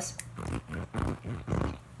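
Wet hands rubbing together, the skin squeaking in several short strokes. The squeak shows the soap has rinsed out of the hands and laundry in the vinegar rinse water.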